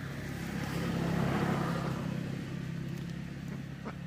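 A motor vehicle passing by, its engine and road noise swelling to a peak about a second and a half in and then slowly fading, over a steady low hum.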